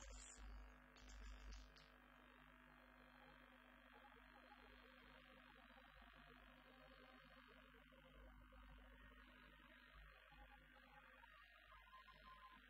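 Near silence: the faint steady hiss and low hum of an audio cassette recording, with a few short, soft bursts of noise in the first two seconds.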